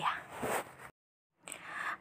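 Scissors cutting through bubble wrap, with a scraping, crinkling plastic rustle. The sound breaks off abruptly under a second in for about half a second of dead silence, then resumes.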